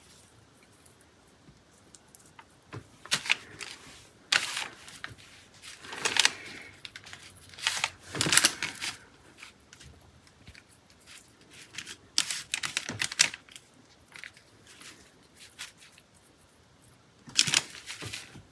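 Wet paper netting being handled, scrunched and pulled apart by hand: short bursts of crinkling and tearing with quiet gaps between them.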